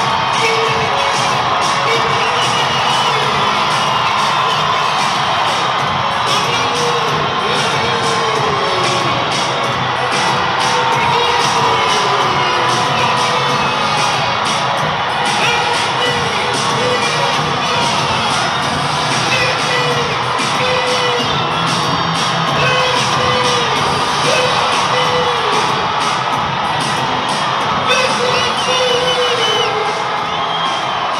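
Large crowd of fans cheering and shouting without a break, many high voices calling out over one another.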